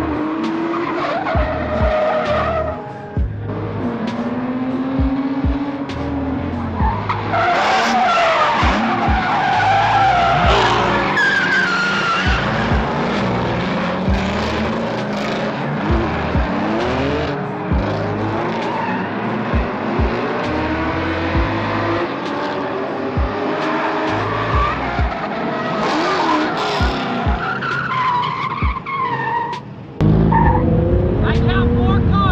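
Drift car sliding: the engine revs rise and fall again and again while the tyres squeal.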